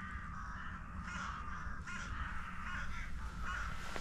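Birds cawing repeatedly, a harsh crow-like chorus, over a low steady rumble.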